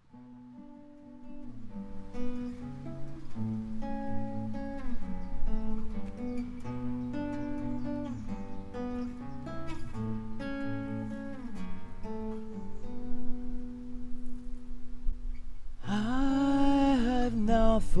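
Acoustic guitars playing an instrumental intro of picked notes, with a bass guitar underneath. A singing voice comes in near the end.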